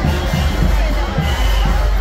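Brass band music from a second line street parade, with a crowd talking and calling out.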